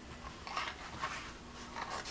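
Quiet rustling and scraping of a kraft cardboard journal cover and its paper as hands slide and turn it on a table, in a few short scuffs.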